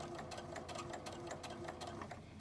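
Electric domestic sewing machine stitching a straight-stitch rolled hem at an easy, even pace: a steady motor tone under a quick, regular ticking of needle strokes.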